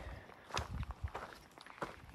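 A hiker's footsteps on a dirt trail: a few soft, irregular steps at a walking pace.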